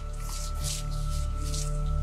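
Suspenseful background underscore music: a low sustained drone with steady held tones and repeated airy, hissing swells.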